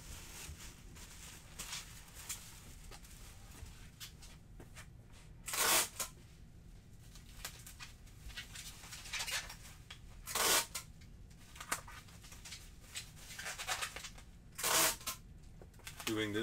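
Bubble wrap being handled and wrapped around a cocktail shaker: soft rustling and crinkling, broken three times by a short, loud tearing sound, about four to five seconds apart.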